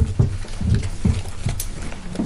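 A run of low, dull thumps and knocks, about six in two seconds at uneven spacing, over a steady low hum.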